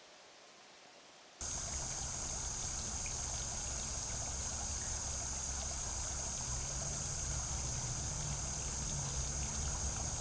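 Near silence, then about a second and a half in, the steady sound of flowing stream water starts suddenly and keeps going evenly, with a high hiss on top.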